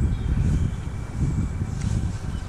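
Uneven low rumble of wind buffeting the microphone, with a faint click from handling fishing tackle near the end.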